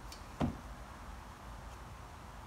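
A single short, soft thump about half a second in, over a faint steady background hum.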